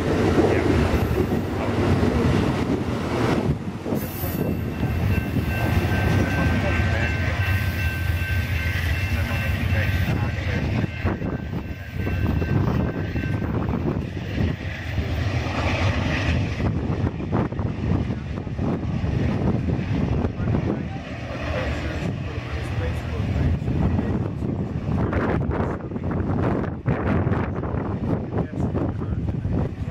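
Amtrak Superliner passenger cars rolling past at close range, a steady rumble of wheels on rail, then fading as the train pulls away. A steady high-pitched squeal sounds for several seconds in the middle.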